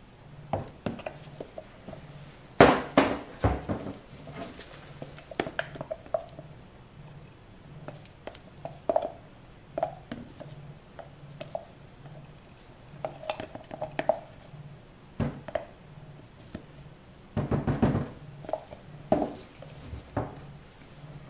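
Plastic pitchers and a silicone spatula knocking and clinking against each other and the stainless steel worktop as soap batter is poured and scraped out, with a few faint squeaks. The loudest knocks come a few seconds in, and a quick run of taps near the end.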